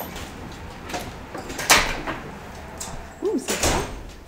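A door opening and shutting, with a few knocks and clunks. The loudest clunk comes just under two seconds in, and a double clunk follows near the end.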